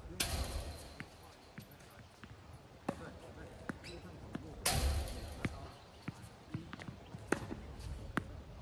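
Tennis balls struck by rackets and bouncing on an outdoor hard court: a string of sharp pops and thuds at irregular intervals. Two brief rushes of noise come in, one right at the start and one a little under five seconds in.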